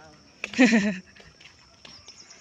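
A person's voice: one short, loud exclamation about half a second in, lasting about half a second, then quiet, with a faint steady high-pitched whine underneath.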